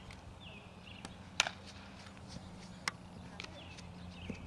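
Sharp smacks of a softball during an infield drill: a loud one about one and a half seconds in and a softer one near three seconds, with a few faint ticks between.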